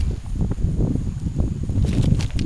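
Low rumbling handling noise with a few light taps and scrapes, from a channel catfish being held down on gravel and measured with a tape.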